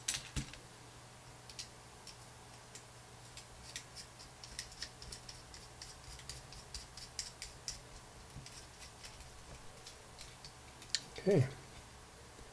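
Small metal standoffs and screws clicking and rattling: fingers sorting hardware in a metal parts tin and fitting standoffs onto a carbon fibre frame plate, a scatter of light, irregular ticks over a steady low hum.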